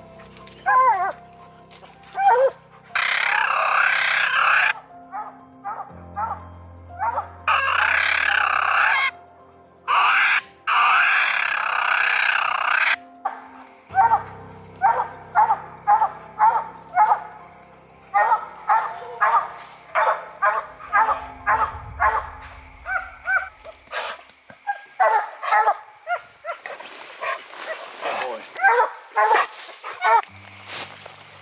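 Coonhounds, a bluetick among them, barking treed at the foot of a tree: rapid repeated barks, about three a second in the second half, the sign that the dogs have a raccoon up the tree. In the first half three loud, harsh rasping sounds of one to two seconds each break in between the barks.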